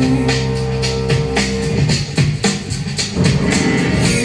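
Music with a steady drumbeat and sustained chords, played by a radio station through a Telefunken Opus 2430 valve radio and its Telefunken RB 45 loudspeakers.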